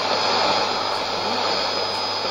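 Shortwave AM reception on 5990 kHz through a Sony ICF-2001D: a steady rushing, static-like noise with a thin high whistle through it and a faint voice beneath. It is two stations on one frequency, the Nauen test transmission clashing with China Radio International's Russian service.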